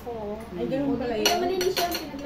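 Metal cutlery clinking against a plate a few times in the second half, over women's voices in conversation.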